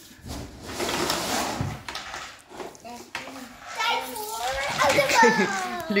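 Young children's voices during play, chattering and calling out without clear words, with a stretch of noise in the first two seconds.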